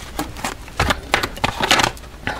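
A Rider-Waite tarot deck being shuffled by hand: a run of quick, irregular papery clicks and riffles as the cards slide and snap against each other, busiest near the end.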